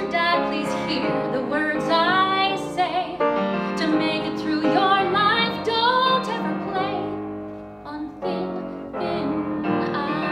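A woman singing a musical theatre song to piano accompaniment, her held notes wavering in pitch, with a brief drop in loudness a little before eight seconds in.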